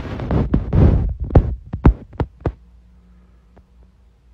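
Handling noise from a phone being moved and gripped: a low rumble with several sharp knocks over the first two and a half seconds, then a faint steady hum.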